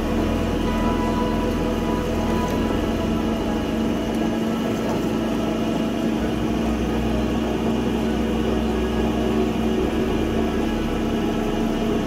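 Drill press running steadily while drilling a small steel part, under background music.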